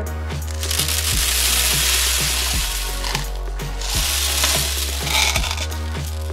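Small plastic beads poured out of a plastic cup, clattering onto a tabletop in two long pours, over background music with a steady beat.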